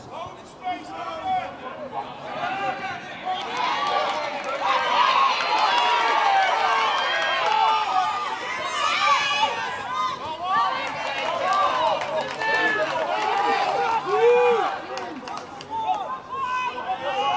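Many voices shouting and cheering at once, none of it clear words. It is fairly quiet at first, swells about three to four seconds in and stays loud, with one strong shout near the end.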